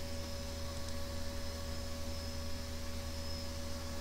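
Steady low electrical hum with a faint even hiss: the background noise of the recording, with no typing or clicks.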